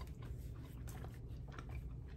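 A person chewing a mouthful of beef and broccoli with the mouth closed: faint, soft, irregular wet clicks over a low steady hum.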